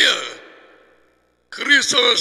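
A man's voice trailing off into a long, breathy sigh that fades away within the first second. After a short silence, his speech starts again about one and a half seconds in.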